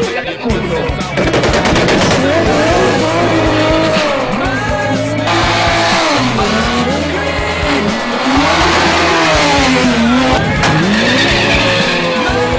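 Drag-racing car engines revving hard, their pitch sweeping up and down again and again, mixed with music that carries a steady bass line.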